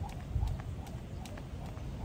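Skipping rope slapping the paving stones in a steady rhythm, about two and a half strikes a second, with the skipper's light landings.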